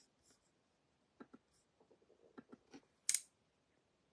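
Faint clicks and taps of a phone being handled, a couple at a time, ending in one louder, crisp click about three seconds in.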